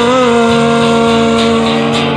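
Live acoustic and electric guitar music, no vocals: the electric guitar holds one long sustained note with a slight bend at the start over strummed acoustic guitar.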